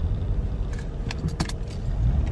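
Steady low rumble inside a car, with a few light clicks and rattles about a second in.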